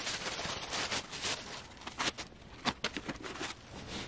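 Rustling and soft scuffing as a black stretch-suede ankle boot is pulled onto a foot. A few sharp little taps come about two to three seconds in.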